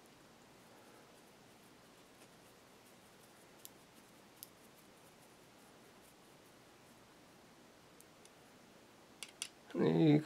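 Small screwdriver turning a screw into a plastic RC servo case: a few faint, scattered clicks over quiet room tone, with a quick cluster of clicks near the end.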